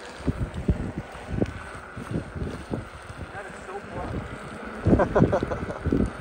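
Wind buffeting a microphone moving at riding speed: an irregular, gusty low rumble. A brief burst of voice comes about five seconds in.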